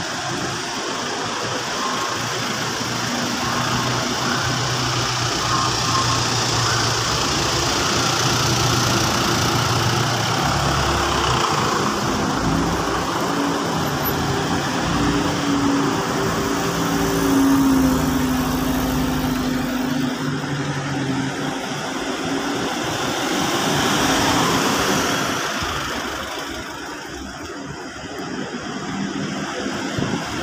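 A slow procession of passenger vans, Nissan and Toyota vans among them, driving past one after another at low speed. Their engines run steadily, swelling and fading as each van goes by.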